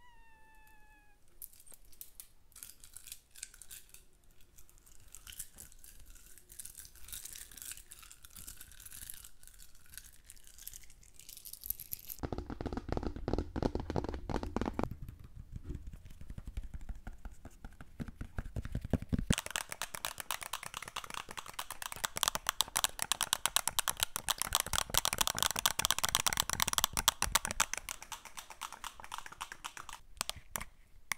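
Beads of a beaded bracelet clicking and rattling softly against each other close to the microphone. About twelve seconds in, fingertips and nails start tapping and scratching quickly on the plastic body of a Wacom drawing tablet. The taps are much louder and densely packed, ease off for a few seconds, then run on fast and dense.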